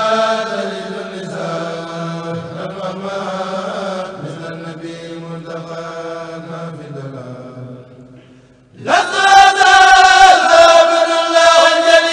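A kourel of men chanting a Mouride qasida in Arabic, unaccompanied and amplified through microphones. After a short drop just before nine seconds in, the full group comes back in louder.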